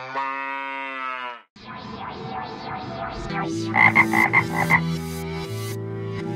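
A single drawn-out animal call, about a second and a half long and falling slightly in pitch, dubbed in as a gag sound effect where the pistol shot should be. Then electronic music starts, with rising sweeps and a quick run of beats.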